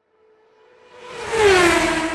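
A swelling whoosh sound effect with a tone that falls in pitch, building from silence to its loudest about one and a half seconds in.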